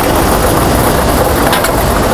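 Lottery draw machine running, a loud, steady mechanical noise as it mixes the numbered balls in its three chambers.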